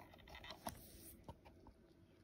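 Near silence with a few faint clicks and scraping as a servo lead's plug is pushed into a port on a servo tester.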